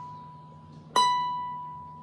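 Rozini student-model cavaquinho's B string, fretted at the twelfth fret, plucked once about a second in and ringing out a single high note that slowly decays; the previous pluck of the same note is still dying away at the start. The octave note is now in tune, after the B string was slackened slightly to make up for the instrument's poor intonation along the neck.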